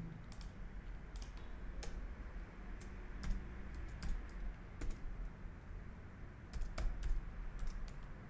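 Computer keyboard typing: irregular key clicks in short clusters with pauses between them, over a faint steady low hum.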